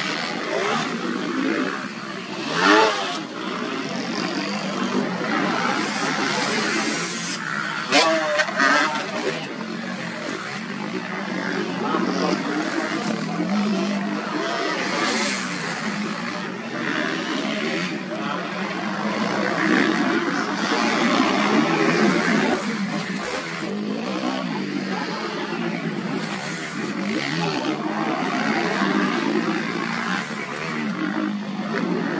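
Motocross bikes racing on a dirt track, engines revving, with louder passes close by about three and eight seconds in. People's voices mix in underneath.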